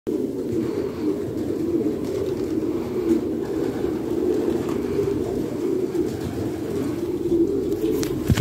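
Many domestic racing pigeons cooing together, a steady overlapping chorus with no breaks.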